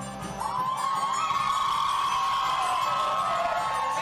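A show choir and its band holding one long note, with the audience cheering and shouting over it. The cheering and the held note come in together about half a second in and stay level.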